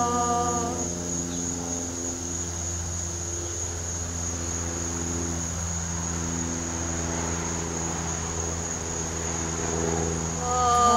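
A woman's sustained chanted 'ka' (the Qi Gong healing sound for the heart) ends under a second in, leaving a steady high-pitched insect chorus over a low, steady hum.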